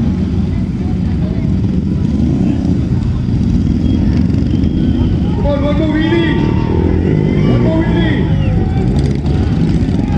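Motorcycle engines running on a dirt race track, with a steady low rumble throughout. Crowd voices and shouts rise over it from a little past the middle.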